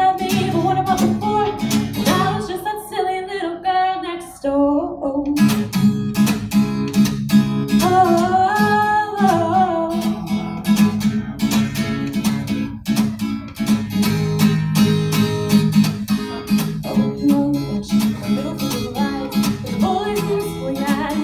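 Live solo song: a woman singing to her own strummed acoustic guitar. The strumming drops out for a couple of seconds about three seconds in while the voice carries on, then comes back in full.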